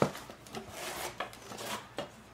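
A cardboard box of thin cedar planks being handled: a sharp knock right at the start, then soft scraping of cardboard and light clicks of wood as a plank is drawn out.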